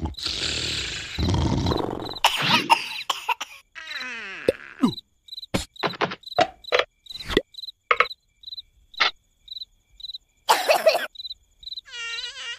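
A cricket chirping steadily, about three chirps a second, under a dark cartoon night scene. The chirps are mixed with short cartoon sound effects and brief vocal noises from the characters. A noisy rush fills the first two seconds.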